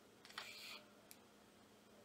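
Gillette shaving-foam aerosol can giving a short, faint hiss of about half a second as foam is dispensed into a palm, followed by a faint click.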